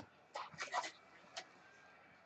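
Faint rustle and flicks of trading cards sliding off a stack held in the hand: a short cluster about half a second in and a single flick near the middle.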